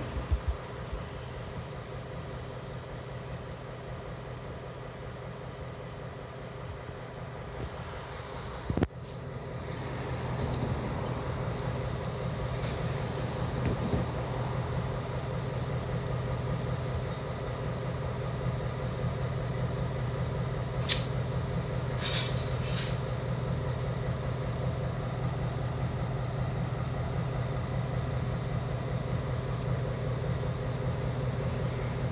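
EMD GP38 diesel-electric locomotive's 16-cylinder two-stroke diesel engine running as the locomotive rolls slowly closer, a steady low hum that grows louder about a third of the way in. A single sharp knock comes about nine seconds in, and a few brief high-pitched sounds about two-thirds through.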